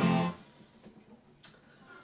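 A single chord strummed on a capoed Yamaha acoustic guitar, sounding sharply and dying away within about half a second. A faint click comes about a second and a half in.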